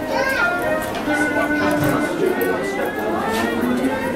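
Shop ambience: background music with indistinct chatter of shoppers, including a child's voice rising in pitch near the start.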